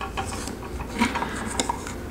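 Teflon thread tape being wrapped by hand around a threaded fitting: faint rubbing and light scattered ticks over a low steady hum.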